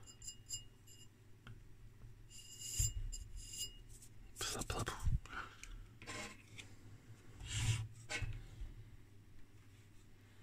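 Faint handling noises: hands rubbing, pressing and scraping on the metal CRT shield and chassis of a vintage Heathkit OS-2 tube oscilloscope, with a couple of short squeaky rubs in the first few seconds.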